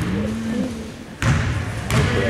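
A basketball bounced once on a hardwood gym floor about a second in, a thud followed by a short hall echo, under spectators' voices.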